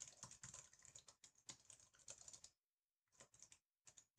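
Faint typing on a computer keyboard: quick, irregular keystrokes as a short line of text is typed, with a brief pause a little past the middle.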